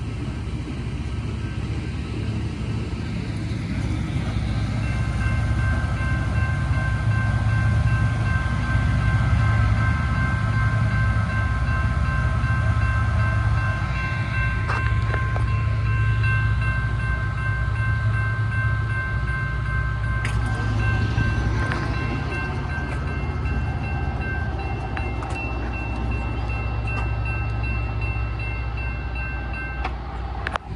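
Yellow Loram track work train rolling past at close range: a heavy, steady low rumble. From about five seconds in, a set of steady high-pitched ringing tones sits over the rumble and lasts almost to the end.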